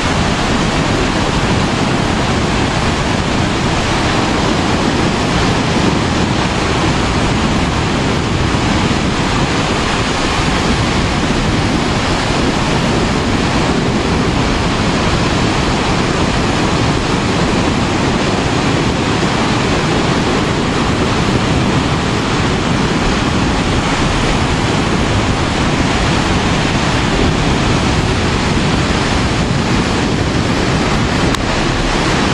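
Small surf waves breaking and washing up a sandy beach in a steady, loud rush, with wind buffeting the microphone.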